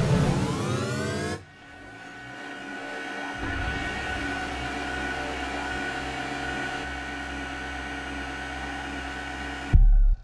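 Electronic soundtrack music: a dense sweep of many gliding tones cuts off sharply about a second and a half in. A steady droning bed of held tones then swells slowly, broken by a sudden loud, bass-heavy hit just before the end.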